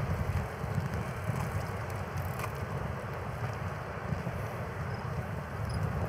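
Wind rumbling on the microphone of a bicycle-mounted camera while riding, over the steady noise of the bike rolling along the street, with one faint click about two and a half seconds in.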